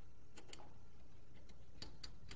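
A few faint clicks, in two pairs about a second and a half apart, from a ball launcher being handled as its firing angle is set, over a low steady room hum.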